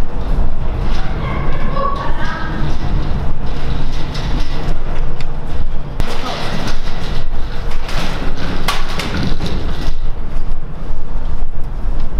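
Knocks and thuds from people walking and gear being carried along a hard-floored corridor, over a steady low rumble of a moving handheld microphone. Faint voices are heard between about one and three seconds in.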